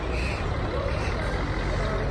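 Bus engines idling with a steady low rumble, amid the general noise of a busy bus station.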